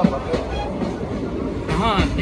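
Passenger train coach running along the track: a steady low rumble with sharp wheel clicks over the rail joints, heard through an open coach doorway.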